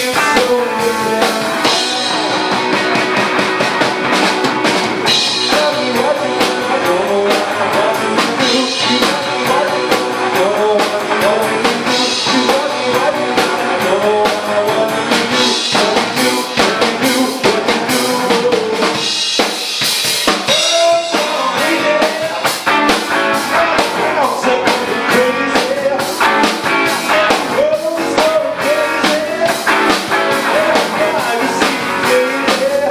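Live blues-rock band playing: electric guitars over a drum kit beat, with a man singing.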